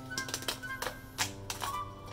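Background instrumental music with held notes, over a series of sharp, irregular cracks and snaps of cooked crab shell being pulled apart by hand.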